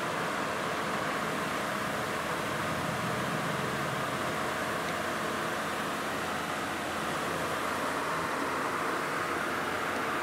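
Steady, even background hiss of room noise with no events in it.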